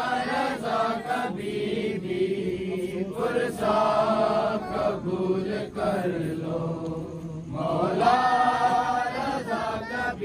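Men's voices chanting an Urdu noha, a Shia mourning lament, unaccompanied, in long held, wavering lines. A few sharp slaps from chest-beating (matam) can be heard.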